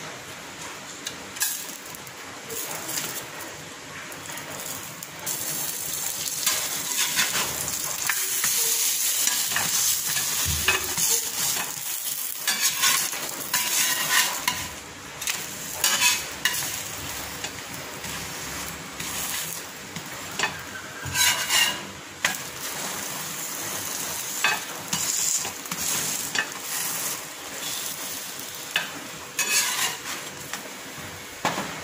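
Paratha frying in butter on a flat iron tawa, sizzling steadily, with short scrapes and taps of a metal spatula on the pan every few seconds.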